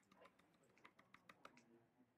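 Faint computer keyboard keystrokes: a quick run of about ten key clicks while a line of typed text is backspaced away.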